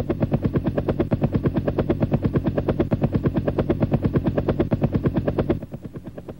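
Machine-gun fire sound effect: one long, even burst of rapid shots, about a dozen a second, that stops near the end.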